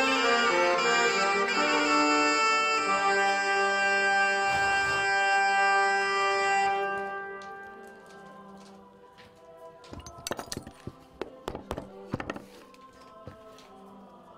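Instrumental music with long held notes fades out over the first eight seconds. Then a cobbler's hand tools give an irregular run of sharp taps and knocks at the workbench over two to three seconds.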